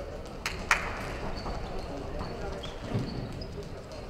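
Boxing gloves landing punches: two sharp slaps close together about half a second in, with a few lighter taps after, over a steady murmur of voices in the hall.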